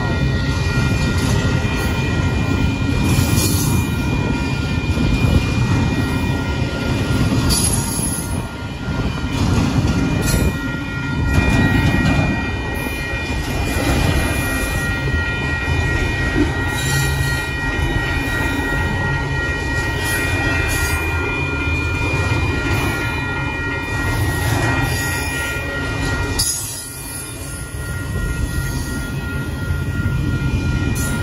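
Union Pacific double-stack intermodal freight train passing close by, a loud steady rumble of cars and wheels on the rails. Several steady high-pitched tones of wheel squeal ride over it, with a brief lull near the end.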